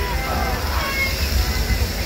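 Rushing water and spray around a river-rapids ride raft, with a steady low rumble and faint voices in the background.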